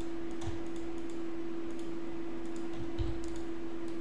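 A few faint clicks of a computer mouse and keys over a steady hum and faint hiss.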